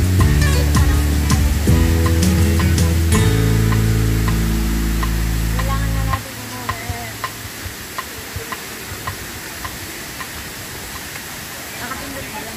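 Background music with a heavy bass line cuts off suddenly about six seconds in, leaving the steady rush of a waterfall with faint scattered ticks.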